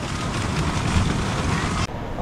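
Steady rush of splashing water from an overhead spray jet pouring into a lazy river, cutting off abruptly near the end.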